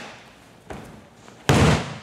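A judoka thrown onto the tatami: a loud slap and thud of body and breakfall hitting the mat about three-quarters of the way in. A sharper smack comes right at the start and a lighter thump partway through.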